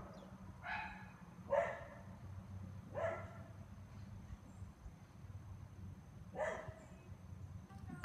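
Dogs inside the house barking, four short barks spread across a few seconds: they have caught the scent of the bears in the yard.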